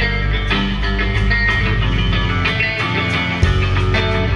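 A live rock band playing: electric guitar over electric bass and a drum kit, with regular cymbal strokes. The bass line shifts to a new note about three and a half seconds in.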